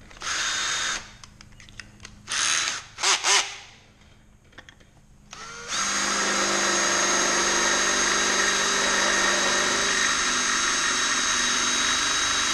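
Cordless drill boring into the aluminum clutch side cover of a Yamaha Banshee ATV. It gives a few short bursts in the first three and a half seconds, then runs steadily from about six seconds in. The bit is dull and cuts the aluminum poorly.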